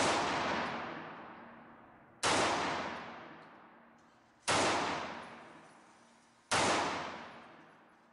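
Smith & Wesson Model 915 9mm semi-automatic pistol firing four single shots, about two seconds apart, each one dying away in a long echo.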